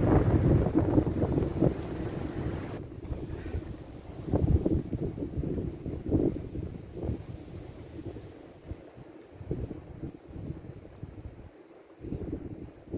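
Wind buffeting the microphone in irregular gusts, a low rumble that is strongest at the start, swells again a few seconds in and eases off near the end.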